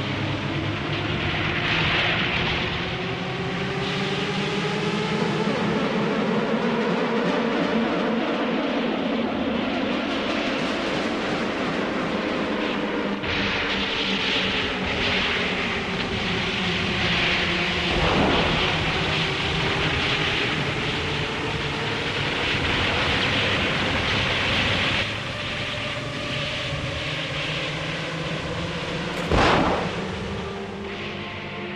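Steady engine drone whose pitch sweeps slowly up and down, with a sharp bang about eighteen seconds in and a loud blast just before the end, from a staged battle with a field gun and pyrotechnic explosions.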